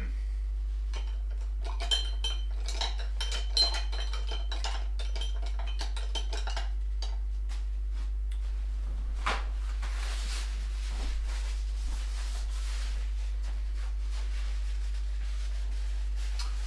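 Painting tools clinking and tapping against glass, with short ringing notes, for several seconds, then a single knock and a few seconds of rustling, over a steady low hum.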